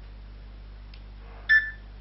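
A Sony Ericsson W760i mobile phone gives one short electronic beep about one and a half seconds in, the tone that marks video recording starting.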